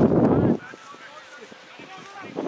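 A man's short, loud shouted call lasting about half a second, followed by quieter open-air background with faint distant voices.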